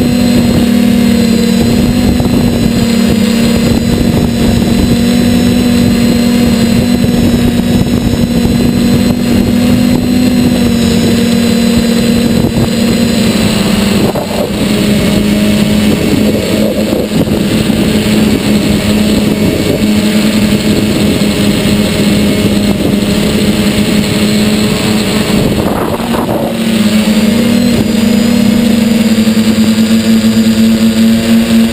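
Motor and propeller of a radio-controlled model aircraft, heard from on board at close range, running steadily and easing off briefly about halfway through and again near the end.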